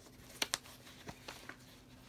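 Hands handling a canvas sneaker, pushing it from the inside: a few light clicks and rustles, the two sharpest about half a second in.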